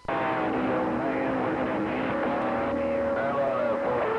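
Radio receiver hissing with a strong incoming signal: static with garbled, faint voices and wavering whistling tones over it, as from a station coming in on skip.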